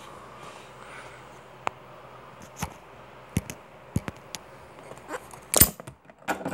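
Handling noise of a phone being picked up and moved: scattered light clicks and rubbing against the microphone, with one louder knock near the end.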